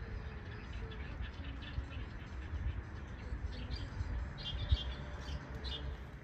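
Small birds chirping in short, scattered high calls, busiest about two-thirds of the way through, over a steady low rumble.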